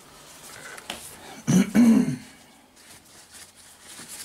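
A person clearing their throat once, about one and a half seconds in.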